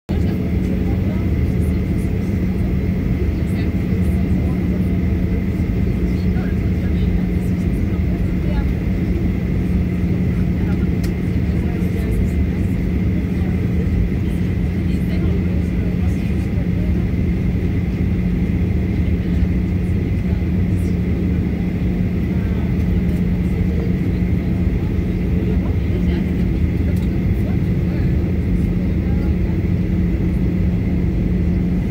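Airliner cabin noise while taxiing: a steady engine drone with a constant low hum and a faint high whine over a low rumble, holding the same level throughout.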